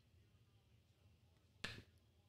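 Near silence, broken once near the end by a short, sharp click.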